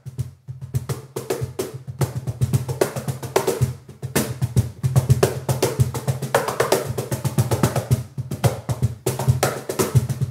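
Meinl cajon played by hand in a fast groove of deep bass tones and sharp snare slaps, picked up only by a microphone at the rear sound port, so the rich low bass stands out.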